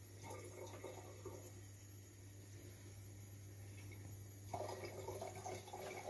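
Faint trickle of liquid from a home still, distillate dripping from the outlet tube into a measuring cylinder, over a steady low hum. It grows a little fuller about four and a half seconds in.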